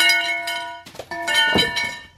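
Aluminum ladder clanging as it is pulled from its box: the metal rails ring with a clear, bell-like tone that dies away, then a second clang about a second in rings on almost to the end.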